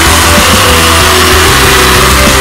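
Loud avant-garde metal recording in a passage without vocals: a dense, noisy wash over steady low sustained notes.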